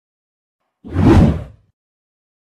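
A single deep whoosh sound effect about a second in, lasting under a second, of the kind used as a transition between pictures in an edited video.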